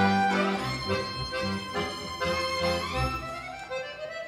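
Violin and piano accordion playing together, the violin carrying the melody in held notes over the accordion's chords. About three seconds in, a note slides upward, and the music grows softer toward the end.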